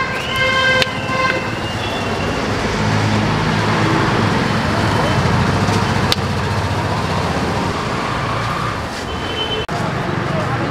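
Road traffic: a vehicle horn sounds for about a second at the start, then a motor vehicle's engine runs close by for several seconds.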